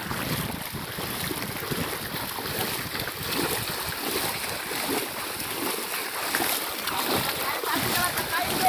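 Feet wading through shallow seawater: a run of irregular sloshing splashes as several people walk through the water, kicking it up with each step.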